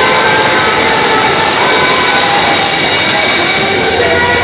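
Loud live church band music, heard as a dense, distorted wash through the phone's microphone with little clear melody.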